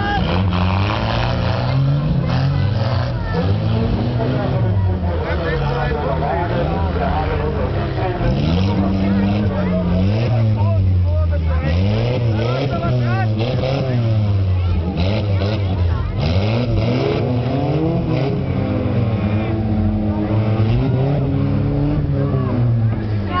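Several stock car engines revving and running at once, their pitch rising and falling repeatedly as the cars race and collide on the track. Voices can be heard over them.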